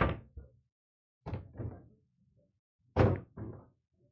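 Pool balls knocking after a 9-ball break on a 7-ft Valley bar table. The break's crack dies away at the start, then the spreading balls make separate knocks: a pair about a second and a half in and a louder pair about three seconds in.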